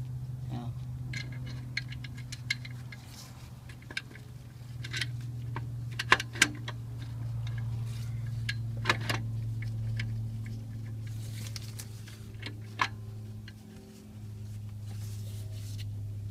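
Scattered clicks and metal clinks of hand work on a Honda Accord's alternator and its fittings, with a few sharper knocks around the middle, over a steady low hum.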